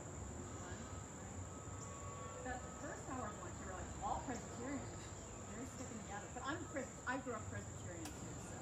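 A steady high-pitched insect chorus running throughout, with faint voices from a few people partway through.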